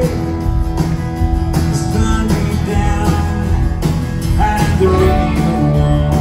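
Live band playing at full volume: several electric guitars over bass and drums, recorded through the venue sound from the audience.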